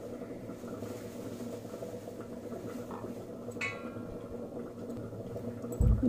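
Quiet room tone with a steady low hum. A short, brighter sound comes about three and a half seconds in, and a soft low thump just before the end.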